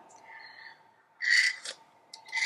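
A person sipping an almond latte from a mug: a faint airy draw, then one short slurp about a second in.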